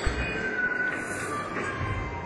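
Experimental electronic ambient music: a dense hissing, grainy texture with thin, high squeal-like tones that step down in pitch one after another. There is a low thud right at the start and a low swell near the end.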